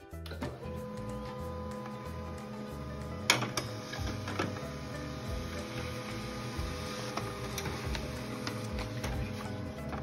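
HP desktop laser printer running as it prints a page: a steady whirr with one sharp clack about three seconds in.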